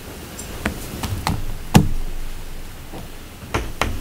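About half a dozen light knocks and taps scattered through a pause, the loudest a little under two seconds in: objects and papers being handled on a meeting table near the microphones, over a faint room hum.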